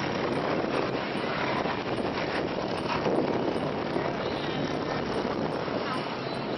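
A steady rushing noise, largely wind on the microphone, over the paddles of a long ngo racing boat's crew working the water.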